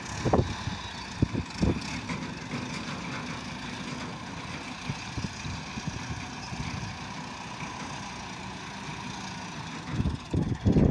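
Massey Ferguson 240 tractor's three-cylinder diesel engine running steadily as the loader tractor moves about, with a few low thuds in the first couple of seconds.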